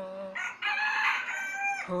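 A rooster crowing once, a loud, high call of about a second and a half starting about half a second in and falling away at its end. A man's held sung note fades out just before it, and his unaccompanied singing resumes as it ends.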